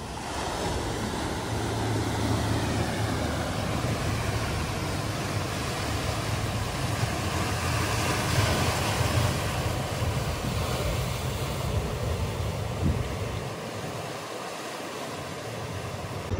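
Sea waves washing and breaking over a rocky, mossy shore, with wind buffeting the microphone as a low rumble.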